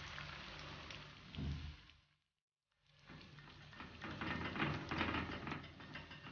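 Pakoda batter deep-frying in hot oil, a steady crackling sizzle. A low bump comes about one and a half seconds in. The sound drops out for half a second, then returns louder and more crackly.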